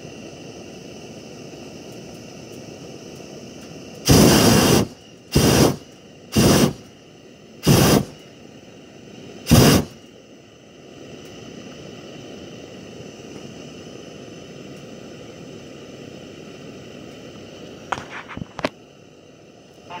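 Hot air balloon's propane burner fired in five short blasts on the landing approach, starting about four seconds in: the first about a second long, the rest shorter, a second or two apart. Between the blasts a steady low hiss.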